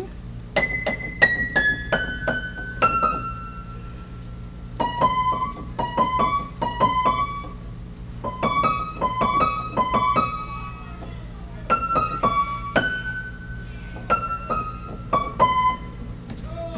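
Piano played one note at a time with one hand: a simple melody in four short phrases with brief pauses between them, each note struck and left to ring and fade.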